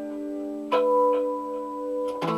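Hollow-body electric guitar with a Bigsby-style vibrato tailpiece, played unaccompanied: a chord rings and fades, then new notes are picked about two-thirds of a second in, with another a moment later, and left to ring.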